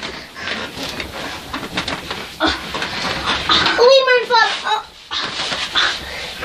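A girl's high, wavering vocal sound about four seconds in, with scattered knocks and rustles from bed and bedding as she gets into a headstand on the bed.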